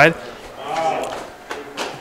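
Brief lull in the football play-by-play commentary: the commentator's voice trails off, and a faint voice is heard in the background before he speaks again.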